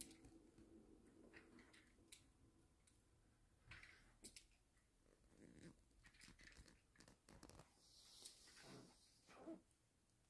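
Near silence: faint scattered clicks and soft short rustles.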